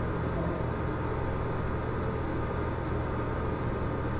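Steady low electrical hum with an even background hiss, unchanging throughout.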